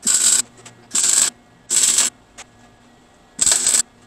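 Electric arc welding: four short tack welds, each a burst of crackling under half a second long, spaced about a second apart with a longer gap before the last.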